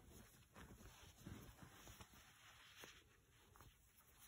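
Near silence, with a few faint soft rustles of cloth and thread being handled.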